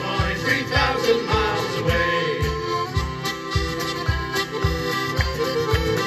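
Live folk band playing an instrumental break between verses: a piano accordion carries the tune over a strummed acoustic guitar, with a steady beat of about two strokes a second.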